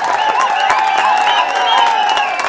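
A crowd cheering and clapping, with a faint wavering high tone running through the noise.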